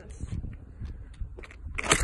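Footsteps on asphalt and wind rumbling on the phone's microphone, with a few faint ticks, as she moves in to kick the bottle cap; a sudden loud burst of noise begins near the end.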